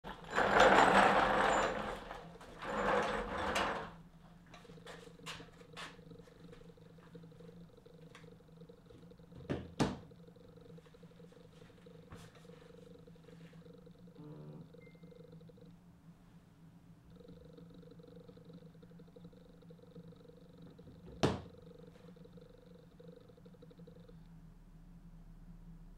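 A person moving about and settling onto a low stool: a burst of rustling noise in the first four seconds, then scattered clicks and knocks, the loudest about ten seconds in and one more near the end. Under it runs a steady low hum.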